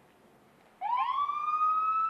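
Ambulance siren starting up about a second in: a rising wail that sweeps up quickly, then holds a slowly climbing tone, over faint street noise.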